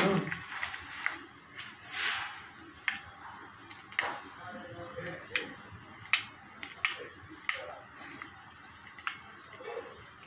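Short, irregular clicks and soft squelches, roughly one a second, as whipped cream is squeezed from a piping bag onto a handheld metal flower nail, over a faint steady high hiss.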